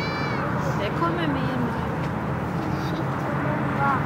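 Steady road noise from traffic on the highway, with a few short, high-pitched voice-like calls near the start and about a second in.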